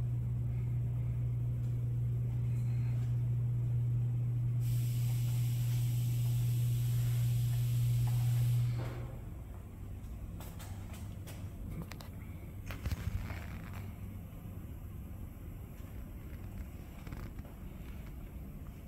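A steady low machine hum, joined by a hiss about five seconds in. Both stop abruptly about nine seconds in, leaving faint handling noises and a few light clicks.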